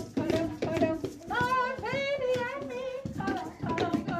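Voices chattering, then from about a second in a single voice holds one long sung note for about two seconds, its pitch wavering, before the chatter resumes.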